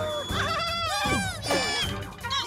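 Wordless, high-pitched cartoon character vocalizations: several short calls, each sliding down in pitch, over background music.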